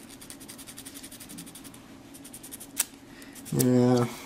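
Sandpaper rubbed quickly back and forth on a small plastic model-kit part, smoothing the spots where it was cut from the sprue: fast, even scratchy strokes for about two and a half seconds, then a single click. A short hummed voice sound closes the window.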